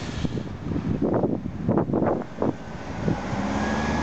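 Road traffic: car engines and tyres passing on a busy road, with a few swells of passing vehicles and a steady engine hum near the end.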